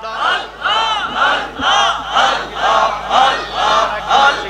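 Congregation chanting zikir in unison, a short call repeated in a steady rhythm about twice a second.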